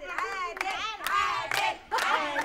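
Studio audience clapping, with voices calling out and chanting high over the claps.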